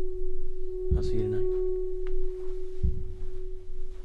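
A steady, pure sustained tone, a drone held under the scene, with deep low thuds about a second in and again near three seconds.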